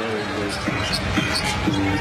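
A basketball being dribbled on a hardwood court, bouncing several times, over steady arena background noise.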